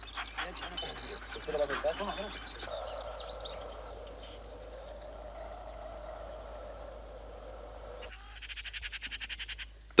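Animal calls, with short bending whines or yelps in the first seconds, then bird chirps over a steady drone. Near the end comes a fast, even rattling chatter of Eurasian magpies at a carcass.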